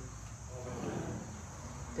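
Crickets trilling steadily in a high, even band, faint, with a soft murmured spoken response from a small group about a second in.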